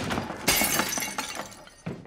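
A large ceramic vase smashing on a hard floor about half a second in, the shards clattering and tinkling as they settle over the next second.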